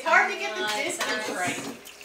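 Mostly people talking, with some light clinking of dishes or glassware underneath.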